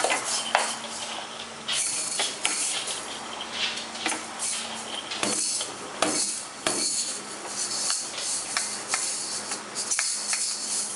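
Plastic toy maracas shaken and a toy drum tapped by hand, in irregular rattles and knocks with no steady beat.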